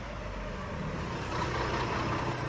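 Heavy diesel dump truck driving up close, its engine and tyres growing steadily louder.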